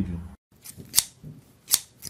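Two sharp scissor snips, one about a second in and one near the end.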